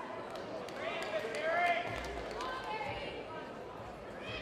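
Men's voices calling out, loudest about a second and a half in, with a few sharp knocks among them.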